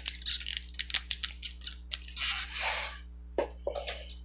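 A plastic action figure of the Rathalos monster being handled and set down on a wooden shelf: a quick run of small clicks and taps, a short rustling scrape a little past two seconds in, then two more taps.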